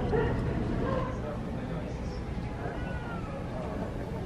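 Indistinct voices with short rising and falling calls over a steady low hum.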